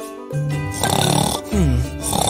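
Cartoon snoring from a sleeping character: a rasping breath in, then a falling whistle on the way out, over background music.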